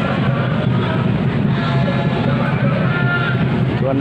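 Open-air stadium ambience: a steady low rumble with faint distant voices of people around the pitch.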